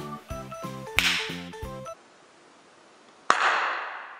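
Background music with a steady beat, cut by a sharp whip-like crack about a second in. The music stops about halfway through, and after a short hush a second sharp crack rings out with a long fading hiss.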